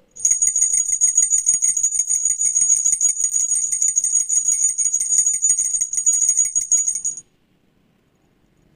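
Small bells shaken rapidly: a loud, steady, high-pitched jingling that stops suddenly about seven seconds in.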